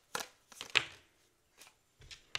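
A deck of tarot cards being shuffled by hand, giving a few sharp card snaps. The loudest comes just under a second in.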